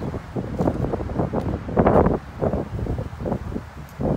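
Wind buffeting a phone's microphone in irregular gusts, mostly a low rumble.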